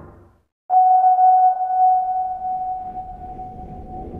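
A single steady ringing tone, a soundtrack sound effect, starts suddenly just under a second in and slowly fades away. Just before it, the last of the previous music dies out into a brief silence.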